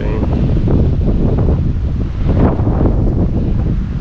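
Wind buffeting the microphone: a loud, steady, gusty rumble.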